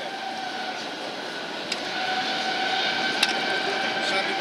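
Rail traffic passing on nearby tracks: a steady rumble carrying two thin, steady whining tones, growing louder about halfway through.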